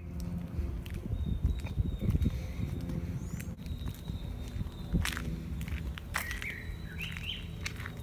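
Footsteps on a paved garden path with the rubbing and knocks of a handheld camera being carried, and a few bird chirps about six seconds in.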